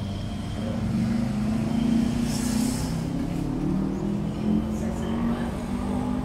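A low, steady engine drone, as of a motor vehicle running, wavering slightly in pitch.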